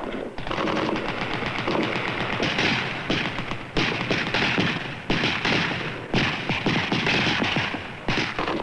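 Small-arms fire, an automatic weapon and rifles going off in rapid, overlapping bursts with a few short breaks.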